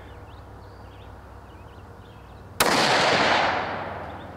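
A single rifle shot from a Tikka UPR chambered in 6.5 Creedmoor, fired about two and a half seconds in; the report starts suddenly and rolls away over about a second and a half. Faint bird chirps are heard before the shot.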